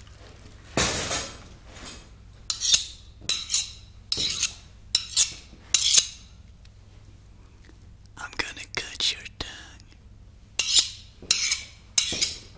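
Metal hand tools being picked up and handled, clinking and clattering against each other in about a dozen separate, irregular bursts, with a short pause in the middle.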